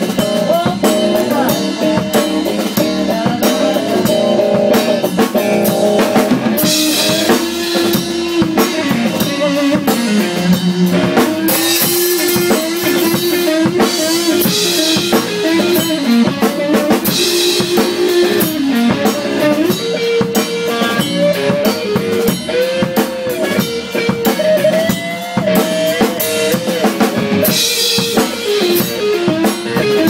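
A band playing live, heard close to the drum kit: a steady drum beat on drums and cymbals with electric guitar underneath, and several loud cymbal crashes.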